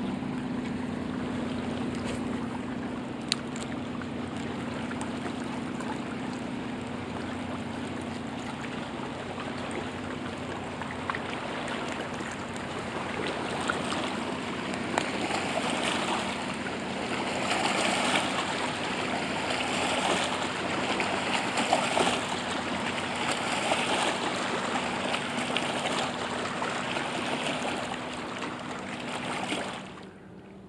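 Waves rolling in and washing over the rocks at the water's edge. They build from about halfway through into a run of surges roughly every two seconds, splashing over the stones, with a steady low hum underneath.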